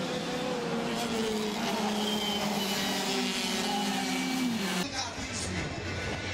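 Racing kart engines running on the circuit: several engine notes held and sliding down in pitch as karts go by. Near the end the sound cuts abruptly to the noisier mixed sound of a pack of karts.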